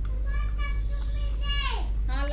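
A child's high-pitched voice calling in the background, with a falling note near the end.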